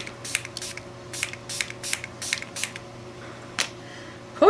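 Pump-spray bottle of acrylic paint spritzed in quick short bursts, about ten in the first two and a half seconds and one more near the end.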